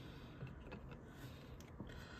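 Faint handling of glossy Topps Chrome trading cards: a few soft clicks as cards are slid off the stack in the hand.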